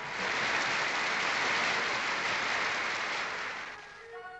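Audience applauding. The applause sets in abruptly and dies away near the end.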